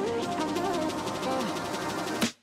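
Background music: a steady instrumental track with melodic lines moving up and down.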